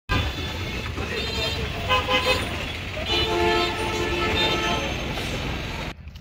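Busy street traffic with engines running and vehicle horns honking: a short honk about two seconds in and a longer one starting just after three seconds. The street noise cuts off abruptly near the end.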